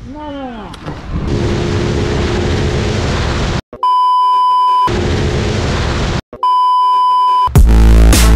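Edited-in TV sound effects: a few quick falling swoops, then television static hiss broken twice by a steady test-card beep about a second long each. Electronic music with a heavy beat starts near the end.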